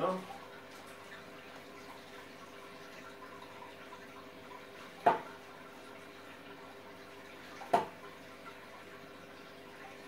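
Aquarium filter running: a steady hum with water trickling. Two sharp clicks break it, about five seconds in and again a couple of seconds later.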